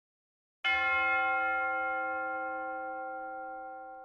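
A single bell-like chime struck once, about two-thirds of a second in, ringing out and slowly fading.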